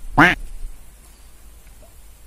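A single short, loud call about a quarter second in, its pitch rising and falling; the rest is faint background.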